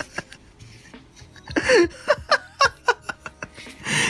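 A man laughing in short chuckling bursts, one with a falling pitch about one and a half seconds in.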